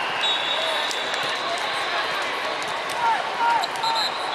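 Echoing din of a large arena hall full of volleyball courts: volleyballs being struck and bouncing on the courts, voices, and a few short squeaks near the end.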